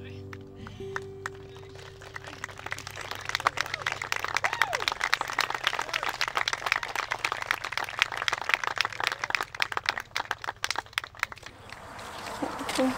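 The last notes of an acoustic guitar ring out and fade. Then audience applause starts about three seconds in and dies away near the end.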